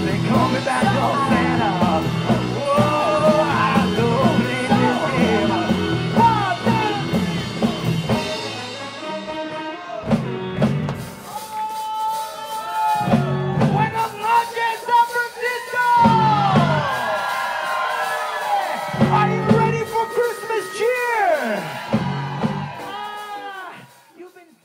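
Live rock band playing with singing. About eight seconds in, the steady groove breaks off into scattered band stabs with yelps and whoops, as at a song's big finish, and the sound fades out near the end.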